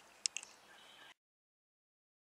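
A few faint, sharp clicks of a handheld camera being handled as the recording is stopped, with a faint high tone, then the sound cuts off to dead silence about a second in.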